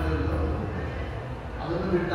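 A man speaking in Kannada through a microphone in a religious discourse, with short pauses between phrases and a steady low hum underneath.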